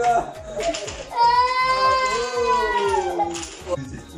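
A child's long, high-pitched wail, held for about two seconds and slowly falling in pitch, after a few shorter cries.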